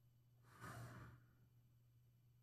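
A man's short exasperated sigh into a close microphone, about half a second in and lasting under a second, over a faint steady low hum.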